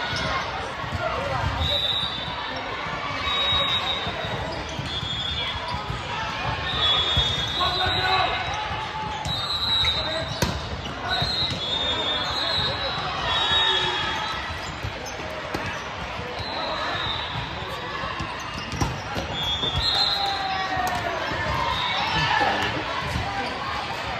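Indoor volleyball hall: a background of players' and spectators' voices, balls thudding, and many short high squeaks of athletic shoes on the hardwood court.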